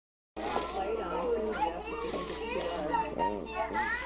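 Several high-pitched children's voices chattering and exclaiming over one another, with no clear words. The sound starts abruptly about a third of a second in, over a steady low hum.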